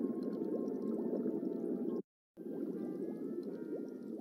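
Fish-tank ambience: a dense underwater bubbling and gurgling rumble with short rising bubble blips. It cuts out abruptly for a moment about halfway through, then starts again.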